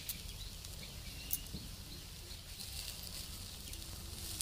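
Faint sizzling of arbi-leaf rolls frying in a little oil in an iron kadhai, over a low steady hum, with one brief click just over a second in.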